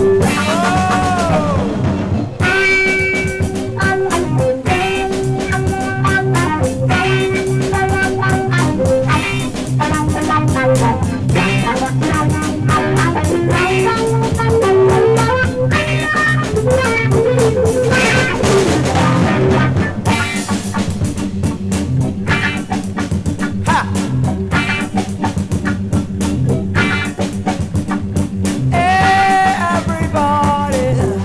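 1970 Ghanaian afrofunk band recording in an instrumental passage: electric guitar lines over a steady drum-kit groove, with gliding lead notes at the start and again near the end.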